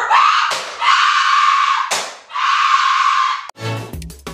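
A voice screaming in three long, loud stretches. Near the end a short musical jingle of plucked notes begins.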